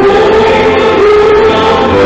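Christian gospel music: a choir singing, loud and sustained.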